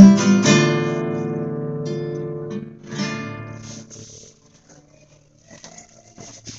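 Nylon-string classical guitar closing the song: a few strums, then a final chord left to ring and fade. One softer strum about three seconds in dies away, and faint clicks follow near the end.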